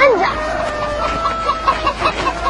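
A bird calling. A sharp call rises and falls at the start, then notes are held, with a quick run of short repeated notes, about five a second, near the end.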